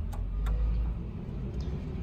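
Low, steady outdoor background rumble with two light clicks in the first half second.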